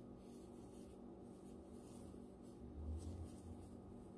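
Faint rustling of hands handling crocheted yarn work and drawing a yarn tail tight to fasten off, with a soft low bump about three seconds in, over a steady low hum.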